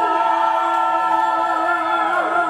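Live rock band with a female singer's wordless wailing vocals that slide up and down in pitch again and again, over a steady sustained droning note.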